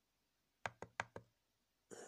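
Four quick, evenly spaced clicks from the tremolo pedal's wave edit knob, a push-button rotary encoder being worked by thumb, coming a little over half a second in.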